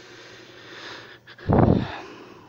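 Handling noise as a plastic model airliner is lifted out of a display cabinet: a soft rustle for about the first second, then a dull thump about one and a half seconds in.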